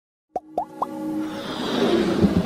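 Logo intro sound effects: three quick rising plops in the first second, then held tones under a swell that builds toward the end.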